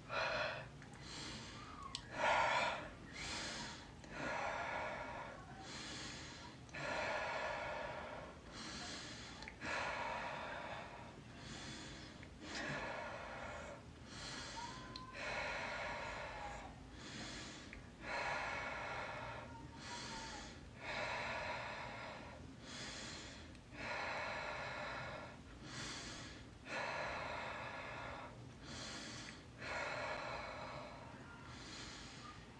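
A woman breathing deeply and forcefully in a paced breathing exercise: a steady series of rushing inhales and exhales, roughly one every second.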